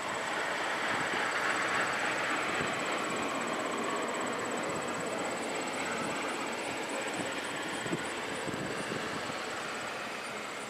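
Steady outdoor background noise: an even hiss with a faint high-pitched whine running through it, and one light click near the end.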